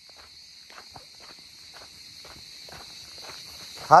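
Footsteps crunching on a dry dirt trail, about two steps a second, over a steady high chirring of insects. Near the end a man's loud shout cuts in.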